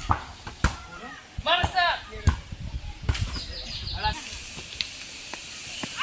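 Children shouting and calling to each other in a barefoot football game, high-pitched cries in short bursts, with several sharp thuds of the ball being kicked.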